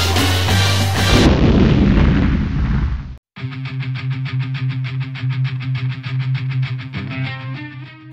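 Background music: a dense, loud track, then about a second in a big cinematic boom that fades away. It cuts out briefly to silence, then a new passage starts with a fast, even pulse over a steady bass note.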